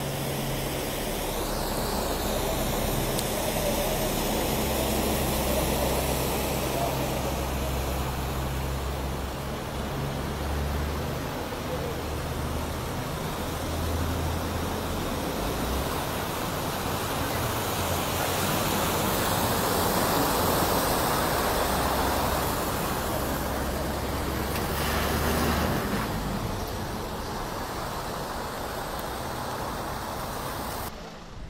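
Vehicles driving slowly through a flooded street: engines running with a steady low hum, and tyres pushing through the floodwater with a continuous wash that swells around twenty seconds in as a four-wheel-drive ute passes. The engine hum stops a few seconds before the end.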